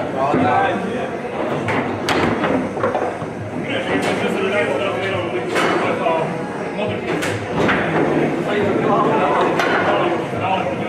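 Foosball being played: sharp knocks and slams of the ball and the players' figures against the table, one of them a shot that scores. They come four or five times over a steady murmur of talk in a large hall.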